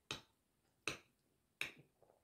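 Metal fork clinking against a ceramic plate three times, evenly spaced, as food is picked up.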